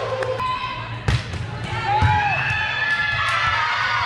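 Indoor volleyball match sounds in a large echoing gym: players' voices calling out over the hall's background rumble, with sharp ball or court impacts, the loudest about a second in.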